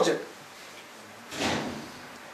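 A brief, soft unpitched noise lasting about half a second, a little over a second in, following the last word of a man's question.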